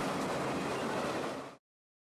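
Passing freight train, a steady rolling rumble of wheels on rail that fades out and stops about one and a half seconds in.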